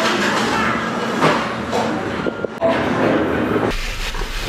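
Steady din of a busy restaurant kitchen and counter, with a few clattering knocks; it cuts off abruptly shortly before the end.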